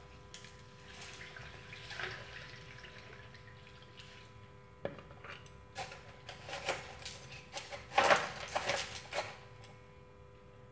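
Water poured from a plastic jug trickling faintly into a metal pot of crushed ice, then chopsticks stirring and poking the ice, making a run of sharp clicks and knocks against the ice and pot, loudest about eight seconds in.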